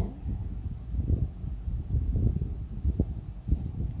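Pencil drawing short strokes on paper, an irregular run of low scratches with a few light taps.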